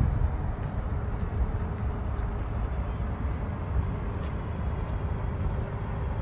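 A small fishing boat's inboard engine runs with a steady low rumble and a faint even hum as the boat motors slowly across a calm harbour.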